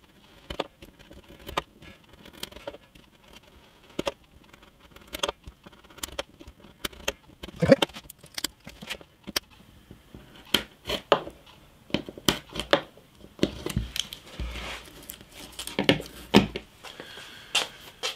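Craft knife blade cutting through a thin piece of wood veneer, in irregular small clicks and scratchy strokes as the blade is pressed and drawn through the wood.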